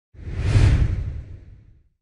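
Whoosh sound effect of an animated logo intro, with a deep rumble under it. It swells quickly just after the start and fades away over about a second and a half.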